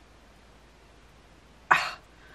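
Quiet room tone, then a single short cough near the end.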